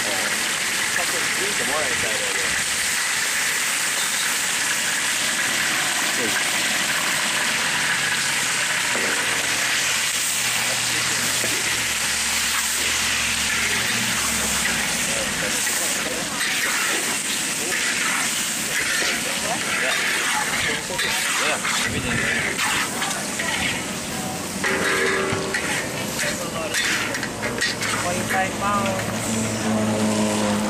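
Chicken pieces sizzling in hot oil in a large steel wok, a steady loud hiss. From about halfway on, metal spatulas scrape and clink against the wok as the chicken is stirred.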